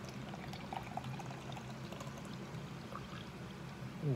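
Carbonated energy drink pouring steadily from an aluminium can into a plastic cup, with small fizzing ticks, over a steady low hum.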